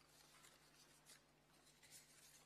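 Near silence, with a few faint soft rustles of paper pages being handled.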